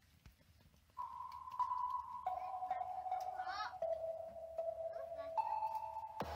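Sustained electronic notes from a laptop, triggered by touching fruit and vegetables wired to a Makey Makey board. After about a second of quiet come four held tones one after another, stepping down in pitch and then back up near the end, with a brief high squeak in the middle.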